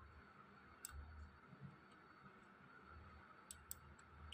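Near silence with a few faint computer mouse clicks: one about a second in and two in quick succession near the end, over a faint steady hiss.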